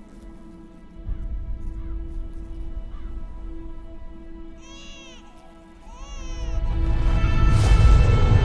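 Dark film-score drone held on a steady tone, with a low rumble coming in about a second in. Two drawn-out animal calls, rising then falling in pitch, come about five and six seconds in. The music then swells loudly toward the end, with a sudden rush just before the end.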